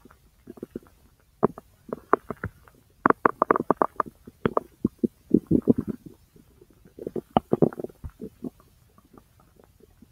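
Bowel sounds from the large intestine: irregular runs of gurgles and small pops, sparse at first and busiest through the middle.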